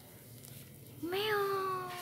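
Domestic cat giving one long meow about a second in, rising at the start and then held level.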